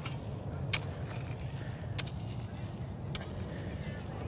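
A shovel throwing soil back into a tree's planting hole: three light, sharp ticks about a second apart over a low, steady rumble.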